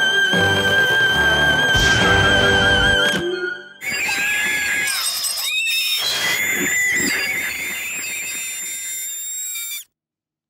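A cartoon voice holding one high sung note over backing music, cutting off about three seconds in. After a brief gap a harsher, grating sound with wavering, sliding pitch follows and stops abruptly near the end.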